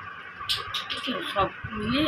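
A woman's voice speaking Bengali in short, quiet syllables, ending in a longer sound that rises in pitch.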